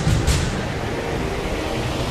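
Cinematic soundtrack sound design: two heavy hits right at the start, then a steady rumbling drone.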